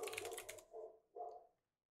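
Faint computer-keyboard typing, a few quick keystrokes, with a couple of short, faint dog barks a second or so in.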